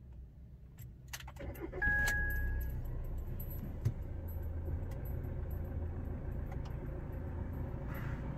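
Fiat Toro's diesel engine started with the key: a few clicks about a second in, a brief crank, and the engine catches about two seconds in, with a short electronic beep as it fires. It then settles into a steady idle.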